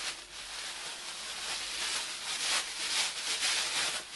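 Plastic bag rubbed over the dry terra sigillata slip on a small clay vase, polishing it up to a shine: a dry, hissy rubbing that rises and falls.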